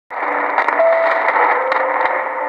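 XHDATA portable shortwave receiver tuned to 3320 kHz, playing a weak distant broadcast buried in dense static hiss, with faint steady tones of shifting pitch running through it and a few brief crackles.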